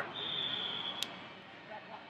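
The background noise of a large tournament hall. Early on a high, steady tone lasts just under a second and ends in a sharp click about a second in.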